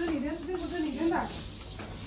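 A person's voice speaking briefly in the first second or so, then fainter.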